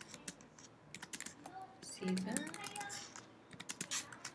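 Typing on a computer keyboard: quick, irregular keystrokes as a line of code is entered.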